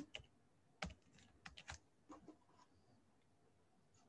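Faint computer keyboard typing: a handful of separate keystrokes over the first two and a half seconds or so, then it stops.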